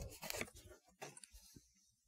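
Faint rustle of a card being drawn from a tarot deck and laid on a cloth-covered table, followed by a few light ticks about a second in.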